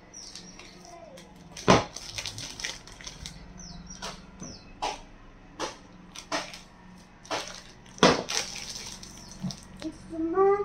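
Long kitchen knife cutting down through a slab of homemade laundry bar soap: a run of short scrapes and sharp knocks as the blade is worked through the soap, the two loudest knocks about two seconds in and about eight seconds in.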